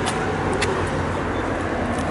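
Steady road traffic noise, an even rush of passing cars with no distinct events.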